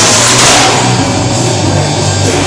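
Loud rock music with a dense, continuous sound and a surge of bright hiss in the first half second.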